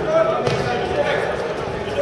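Voices of spectators calling out in a large sports hall, with a few dull thuds.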